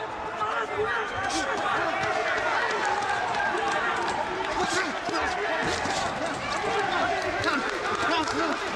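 Several voices shouting over one another in a nearly empty boxing arena, the calls of cornermen and team members, with a few short sharp smacks of boxing gloves scattered through.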